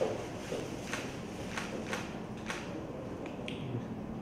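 A handful of short, sharp clicks at irregular moments over a steady room hiss.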